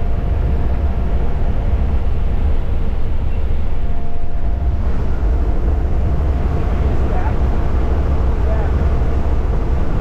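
Steady drone of a jump plane's engine and propeller heard from inside the cabin: a heavy low rumble with a couple of steady whining tones over rushing air noise.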